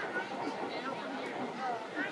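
Background chatter of people talking nearby, a low babble of voices with no one voice standing out.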